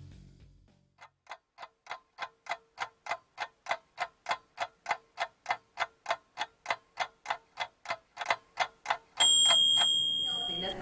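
Clock-ticking sound effect, evenly spaced at about three and a half ticks a second, ending about nine seconds in with a louder, ringing ding that marks the end of the oven time.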